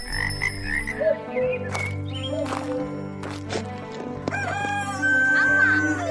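Frogs croaking, with a rooster crowing near the end: a montage of farmland and village animal sounds.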